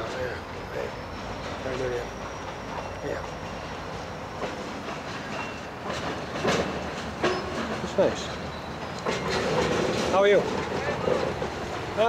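Freight cars rolling slowly through a yard, their wheels clicking and knocking irregularly over rail joints, the knocks growing louder in the second half as the cars come closer.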